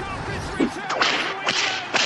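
Outro sound effects: a dense bed of swishing sweeps with four sharp whip-like cracks about half a second apart.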